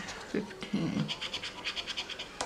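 A coin scraping the coating off a lottery scratch-off ticket in a quick run of short strokes, mostly in the second half.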